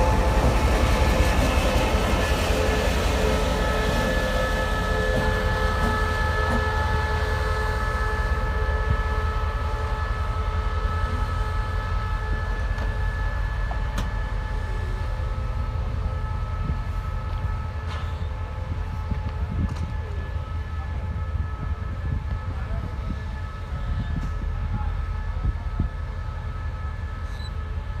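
A pair of SRT diesel-electric locomotives built by CRRC Qishuyan (QSY) running away down the track: a low engine rumble with a few steady whining tones above it, slowly fading as they recede.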